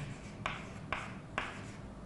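Chalk writing on a chalkboard: four short, sharp strokes about half a second apart as a bracketed expression is written.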